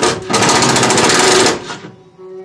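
Impact tool hammering in rapid blows: a short burst, then a longer one of just over a second that stops abruptly, as a fastener is run down.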